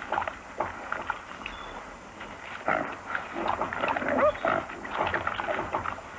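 Wild boar grunting as it roots through crusted snow: irregular short sounds, with a couple of brief pitched squeals a few seconds in.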